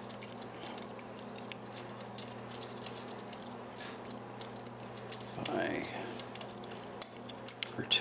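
Faint metal clicks and ticks of a small diamond lock pick working the pins of a brass padlock's keyway under tension, with a few sharper clicks near the end. The picker is feeling for the false set that the lock's spool pins give.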